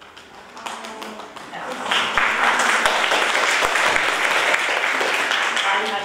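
Audience applauding: a few scattered claps at first, swelling to full applause about two seconds in and tailing off near the end.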